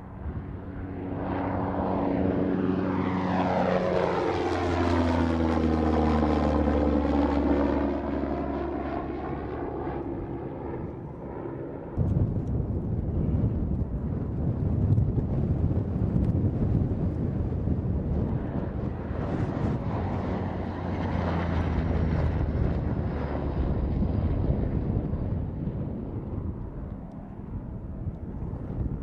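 General Atomics Predator-series drone's propeller engine as the aircraft flies low past, its pitch dropping as it goes by. About twelve seconds in the sound cuts abruptly to a rougher, noisier engine pass that swells again later.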